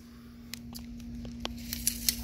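Handling noise from a handheld camera being swung around, with a few light sharp clicks over a steady low hum.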